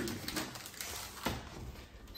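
Quiet kitchen handling sounds during cooking, with a couple of light clicks a little over a second in.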